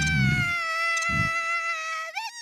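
A long, high-pitched scream of an animated child character, held on one note that slides slightly downward, with two low rumbling thumps under it near the start and about a second in.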